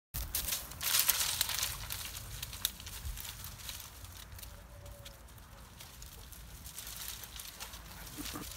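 Belgian Malinois pushing through dry grass and a heap of cut branches while searching for a thrown ball: rustling and crackling of twigs and vegetation, loudest in the first two seconds, then softer scattered rustles.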